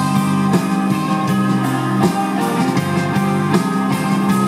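Live rock band playing an instrumental passage: electric guitar over a drum kit with regular cymbal strokes and sustained low notes, with no singing.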